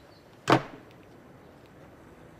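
A single short, sharp knock about half a second in.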